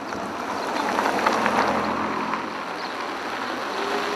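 Street traffic noise: a vehicle passes by, its noise swelling about a second and a half in and easing off again.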